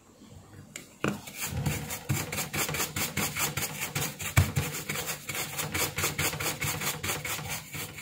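Soft brush scrubbing back and forth over the solder side of a printed circuit board, cleaning the freshly resoldered joints. The quick scratchy strokes come several a second, start about a second in, and include one louder knock near the middle.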